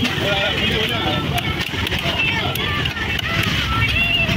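Steady hubbub of several voices talking over one another, with a few sharp knocks of a cleaver striking a wooden chopping block.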